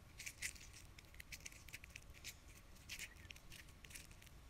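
Faint, irregular sticky clicks of red slime being squeezed and stretched in the hands.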